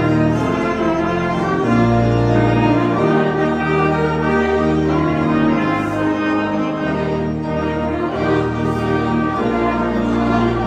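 Two trumpets playing a hymn tune in slow, held notes over low keyboard bass notes.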